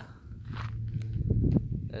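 Footsteps of a person walking across rough ground, with low, irregular rustling and thudding.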